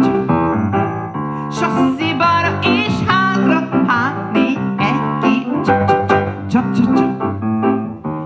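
A woman singing a Hungarian song into a microphone with live piano accompaniment.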